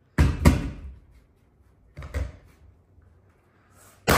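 Mallet blows on a pneumatic flooring nailer, each one firing a nail into an oak floorboard: two sharp bangs in quick succession near the start, then another about two seconds in.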